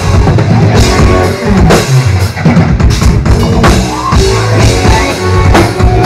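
Rock band playing live and loud, with the drum kit to the fore and guitar underneath, heard from within the crowd.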